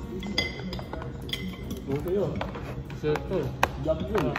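A metal spoon clinking against a plate or bowl while eating: a few sharp clinks with a short ring, the clearest near the start and about a second in.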